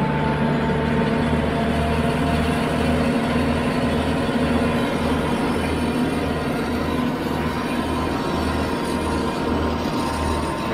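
Kioti RX7320 tractor's diesel engine running steadily under load, pulling a flexwing rotary cutter through thick grass, with a low pulsing about twice a second under the drone.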